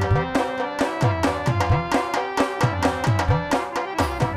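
Live Indian folk-drama stage music: hand drums playing a driving rhythm of sharp strikes and deep strokes that bend in pitch, over sustained melody instruments.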